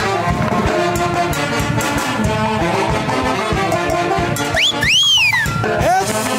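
Live band playing dance music with brass over a steady beat. Near the end, a high whistle-like tone rises and falls over about a second.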